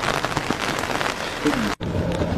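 Steady rain falling, a dense patter of drops striking umbrellas close to the microphone.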